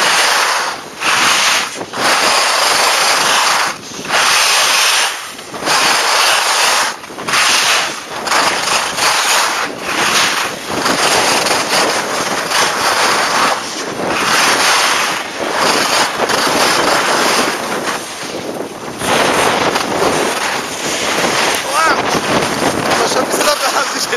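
Skis scraping over groomed snow in repeated turns, each turn a loud swish, about one a second at first and then more continuous, with wind rushing over the microphone.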